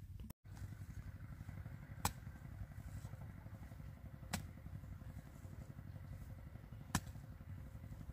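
A hand hoe chopping into soil three times, one sharp strike about every two and a half seconds, over a steady low rumble.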